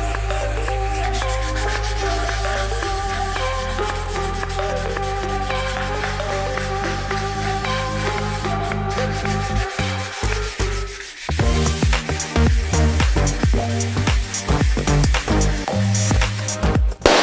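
Rubbing strokes of 800-grit wet sanding paper worked by hand over a raw aluminum bike frame tube, under electronic background music that turns to a heavier beat about ten seconds in.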